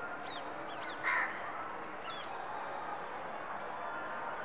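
Birds calling outdoors: one short, harsh call about a second in, among a few brief thin chirps and whistles over faint steady background noise.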